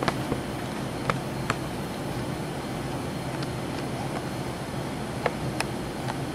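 Steady low mechanical hum of room noise, with a few short, sharp clicks: three in the first second and a half and two near the end.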